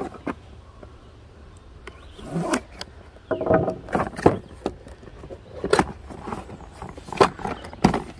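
A cardboard product box being handled and its end flap pulled open: irregular scrapes, taps and rustles of cardboard, sparse at first and busier from about two seconds in.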